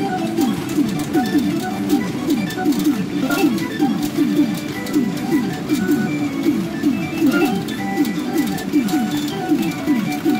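Great Sea Story 4 pachinko machine playing its music and sound effects while its number reels spin. The music is a steady run of quick falling notes, several a second, over thin clicks of pachinko balls.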